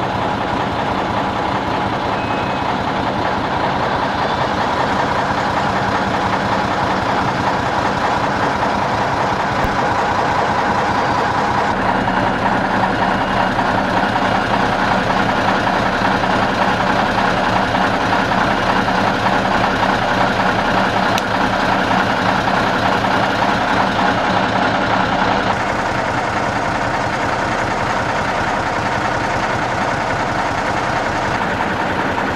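Heavy truck-mounted crane's diesel engine running steadily under load. For a stretch in the middle, a faint high beep repeats at an even pace over it.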